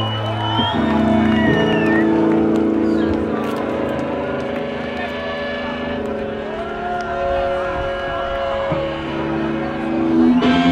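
Live rock band's amplified electric guitars and bass holding long sustained chords that ring on, the notes changing a few times, over crowd noise.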